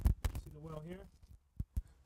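A faint, short spoken fragment, with a few sharp clicks and knocks from the camera being handled and moved: one at the start and two close together near the end.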